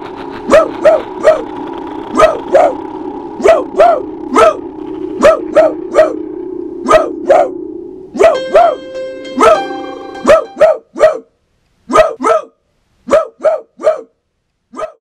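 A dog barking in quick groups of two or three, over and over, over a low droning music bed. About eight seconds in, the drone gives way to a short held chord, and the barks then continue alone, more sparsely, toward the end.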